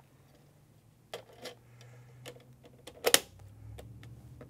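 Plastic film holder of an Epson flatbed scanner being handled and closed: a few separate light clicks and taps, the sharpest about three seconds in.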